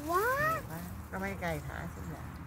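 Excited voice: a drawn-out exclamation rising in pitch, then a short quavering vocal sound about a second later.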